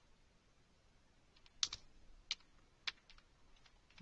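Faint computer keyboard keystrokes: a handful of single key presses spaced unevenly, starting about one and a half seconds in.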